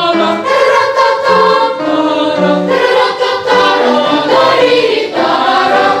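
Boys' choir singing, loud and continuous, moving from note to note.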